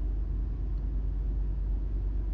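Steady low rumble of a car, heard from inside the cabin, with no distinct events.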